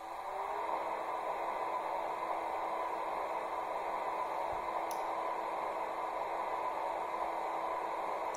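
Sound decoder's ICE power-car standstill sound played through the model train's small loudspeakers: a steady fan-like whir with a steady tone beneath it, switching on suddenly and gliding up briefly in pitch as it starts.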